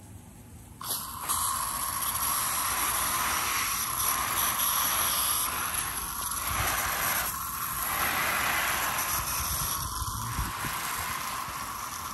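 Water from a garden hose spraying onto potted plants' leaves and soil: a steady hiss that starts suddenly about a second in.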